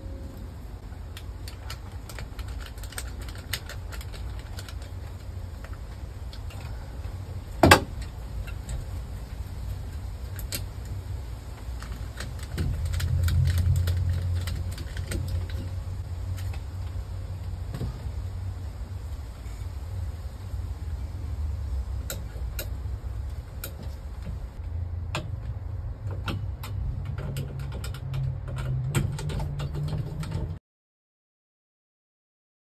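Scattered small clicks and taps of a screwdriver turning terminal screws and wires and a plastic lamp holder being handled at a metal ceiling electrical box, over a steady low rumble. One sharper, louder click about eight seconds in.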